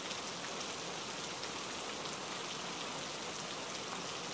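Steady rain falling, an even hiss with no breaks or swells.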